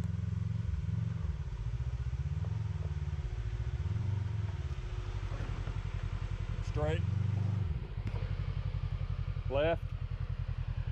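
Kawasaki Teryx KRX side-by-side's engine running at low revs, with the revs rising and falling as it crawls down a rocky creek ledge. Near the end a person says 'yeah'.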